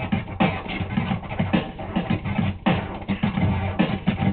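Vinyl record scratched by hand on a turntable, in quick back-and-forth strokes with short swooping pitch slides, over a backing track with a beat.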